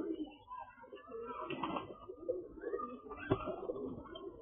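Domestic pigeons cooing continuously over the higher, fainter cheeping of a crowd of chicks, with one sharp clap a little after three seconds in.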